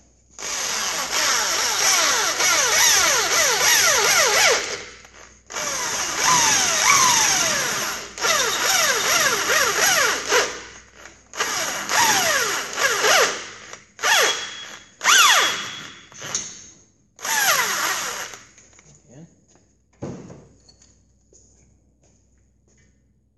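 Hand-held corded electric drill boring out an oil gallery plug in an air-cooled VW engine case. It runs in about seven bursts of a few seconds each with short stops, the later ones shorter and fainter, and repeated falling whistles sound over the motor noise.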